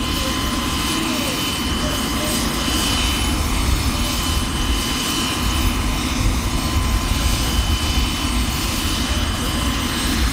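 Light single-engine turbine helicopter running on the ground with its rotors turning: a steady turbine whine over a heavy low rumble.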